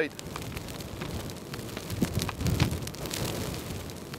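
Large bonfire of freshly cut green logs burning in the wind: a steady rush of flame dense with sharp crackles and pops from the wood, with a low rumble swelling in the middle.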